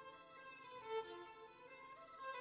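Violin playing softly, a few slow held notes in a quiet passage.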